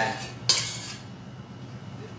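A metal kitchen utensil clinking once about half a second in, a sharp bright hit that rings briefly and fades.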